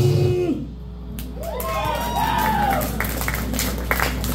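A live punk band's last chord cuts off about half a second in, leaving a steady low amplifier hum. Scattered crowd whoops and cheers and a few claps follow.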